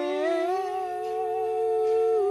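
Voices singing one long held note of a worship song, the pitch stepping up slightly just after it begins and then holding steady.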